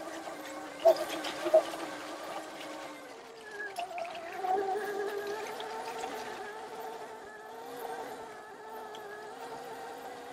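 Oset 24R electric trials bike's motor whining as it climbs a hill, its pitch wavering, dipping and rising again with speed. Two sharp knocks come early, about a second in and again half a second later.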